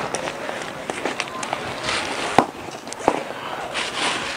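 Small clicks and knocks of a backpack being rummaged through, with two sharper knocks in the second half, a little under a second apart, over steady outdoor background noise.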